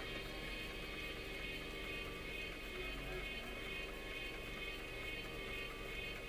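Steady hum inside a car creeping along in traffic: a low engine and road rumble with a faint, unchanging high whine over it.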